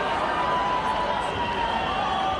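Steady din of a large stadium crowd, many voices blending into one continuous noise, with talk closer by.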